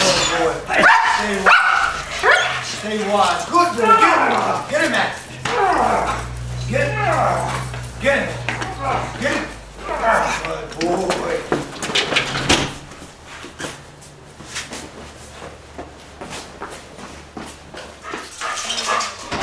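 Protection-trained dog barking aggressively at a decoy in a bite suit, the calls quieter for the last few seconds.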